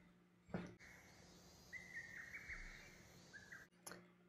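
Near silence: a faint hiss with a few brief, faint high-pitched chirps in the middle.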